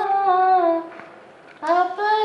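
A young woman singing unaccompanied holds a long note, which fades out just under a second in. A short pause with a breath follows, and she starts the next phrase near the end.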